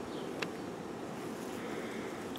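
Honeybee colony buzzing in a steady, low roar, the sound of bees whose queen has been taken away and who know it. A single faint click about halfway through.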